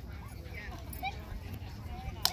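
A small dog yipping faintly a few times over distant voices, with a steady low rumble underneath.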